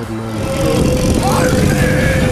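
A rock song gets louder about half a second in, with a voice holding one long sung note over a dense band backing.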